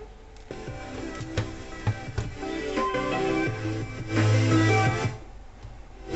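Guitar music from a Walkman playing through a Sharp WQ-CD220 boombox's speakers by way of a newly added AUX input, heard cleanly: the new input works. It gets louder about four seconds in and drops back shortly before the end.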